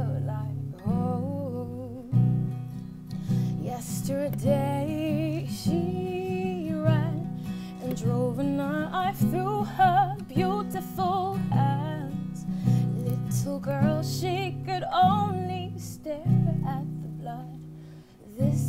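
A woman singing a slow song to her own acoustic guitar. The guitar strums chords throughout, and her voice carries the melody with a wavering vibrato on held notes.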